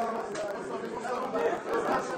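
Indistinct chatter of many people talking at once in a room, no single voice standing out.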